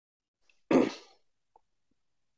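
A single short cough from a man, about a second in: one sudden burst that fades away within half a second, heard through a call microphone.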